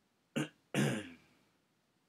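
A person clearing their throat twice, a short sharp one followed a moment later by a longer one.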